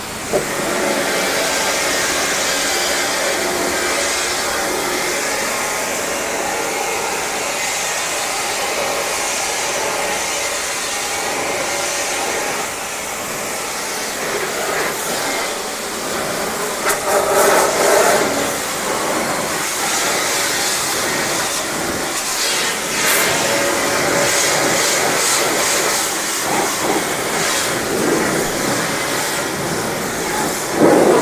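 Pressure-cleaner jet rinsing degreaser off a greasy barbecue's lid and hotplate: a loud, steady hiss of spray on metal that starts suddenly about half a second in. It shifts and swells in stretches later on as the jet moves across the surfaces.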